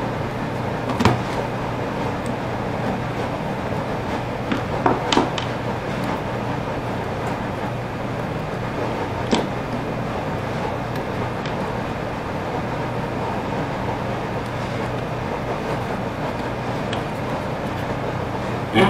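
A few sharp clicks and taps as hand tools and the opened plastic housing of an angle grinder are handled: one about a second in, two close together near five seconds, one near nine seconds. Underneath is steady background noise with a low hum.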